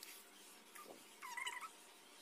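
A brief, faint animal call, wavering in pitch, a little past halfway through, over quiet room noise.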